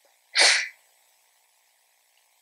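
A single short, loud sneeze, about a third of a second in.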